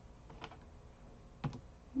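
Two faint clicks about a second apart, from a computer keyboard or mouse being pressed, as when a slide is advanced.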